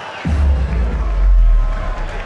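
Arena music over the PA with a heavy, deep bass boom coming in about a quarter of a second in and holding, over a cheering crowd.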